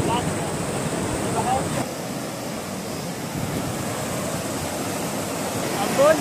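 Shallow, fast stream rushing and churning over rocks, a steady noise of running water that drops a little in level about two seconds in.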